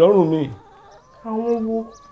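A man's voice in a drawn-out, wavering wail that falls in pitch and trails off about half a second in. A short steady held vocal tone follows a little over a second in.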